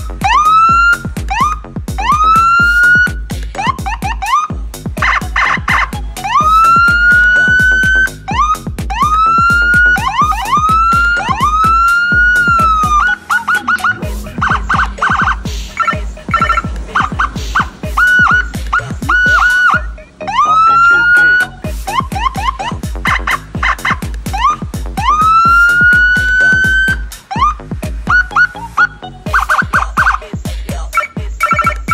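Whelen HHS3200 electronic siren sounding through a Whelen SA315P siren speaker, cycling through its tones: repeated rising whoops that climb and level off, quick short chirps, and stretches of rapidly pulsing high tone. Background music with a steady beat runs underneath.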